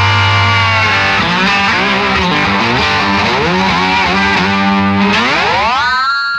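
Slide guitar instrumental: notes glide up and down over a low held note that drops out about a second in, then one long upward slide near the end.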